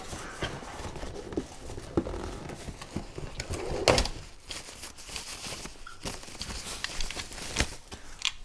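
Plastic packaging rustling and crinkling amid small clicks and taps of handling inside a cardboard box as a wrapped camera part is pulled out and unwrapped, with a sharper knock about four seconds in.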